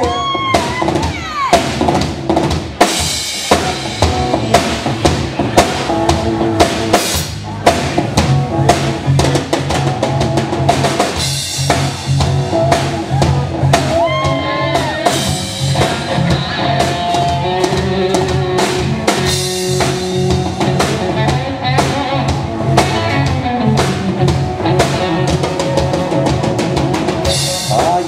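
A live rock band playing loudly on stage: a drum kit dominates, with electric guitars and bass guitar.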